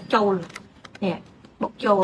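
A woman speaking, broken by a pause of about a second that holds a few light, quick clicks from handling playing cards.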